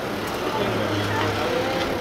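A motor vehicle engine running with a steady low hum amid street noise, with faint voices in the background.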